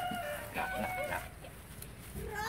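A rooster crowing once: a held, steady-pitched call lasting about a second that ends just past the middle.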